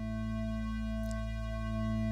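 A Native Instruments Massive synth pad (the "Robotic Angel" patch) holding one low note steadily, a rich tone with many overtones and reverb, which is meant to give the electronic, razor kind of sound.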